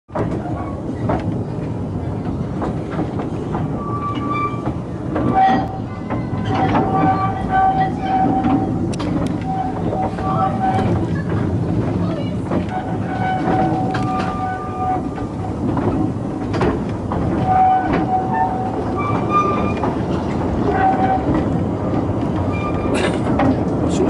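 A narrow-gauge train's open carriages running along the track: a continuous rumble with clicks over the rail joints, and short high squeals from the wheels coming again and again.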